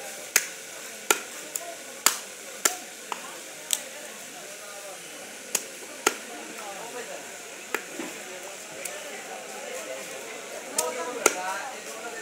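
A heavy fish-cutting knife chopping through a large catfish onto a wooden log block: about a dozen sharp chops at irregular intervals, most of them in the first four seconds and two more near the end.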